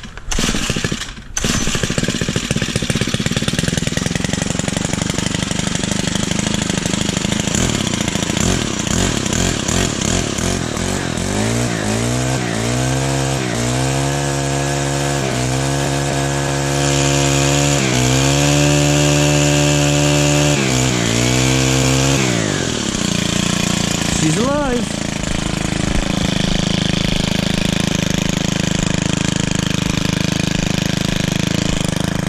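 Stihl FC 95 stick edger's small gas engine, started on choke, catching about a second in and then running. From about eleven seconds to twenty-two it is held at high revs with a few small steps in speed, then drops back to a lower, rougher idle.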